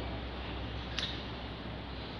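Steady low background hum and room noise, with one brief click about a second in.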